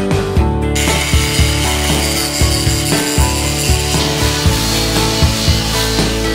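Hand-held angle grinder with a polishing disc working a stainless steel frame: a steady grinding hiss that starts about a second in. Background music with a steady beat plays under it.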